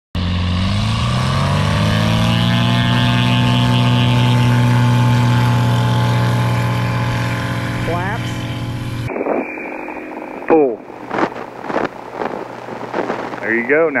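Light single-engine aircraft's engine and propeller running at high power, heard from beside a grass airstrip, the pitch climbing over the first couple of seconds and then holding steady. About nine seconds in the sound switches to a muffled cockpit-intercom feed, the engine much quieter under short spoken calls.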